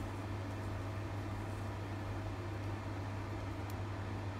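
Steady low hum with a hiss under it: room tone. One faint click near the end.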